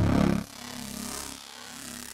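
u-he Hive 2 software synth playing an evolving wavetable bass patch in its Clean engine mode. A loud low note drops away about half a second in, leaving a quieter, hissy, noisy texture.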